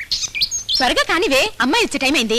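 Birds chirping and tweeting in short, high, quick calls for the first second or so, then a person's voice takes over.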